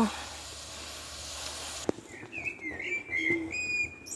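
Chips frying in oil over a wood fire, a steady sizzle that cuts off suddenly a little under two seconds in. Then a bird sings short, high whistled notes that slide in pitch.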